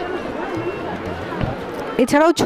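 Indistinct background chatter of many people: a steady hubbub of overlapping voices with no single voice standing out.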